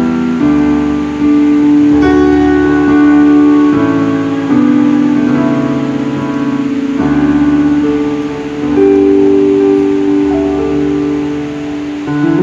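Electronic keyboard playing slow, sustained chords over a bass line, the chords changing every second or two.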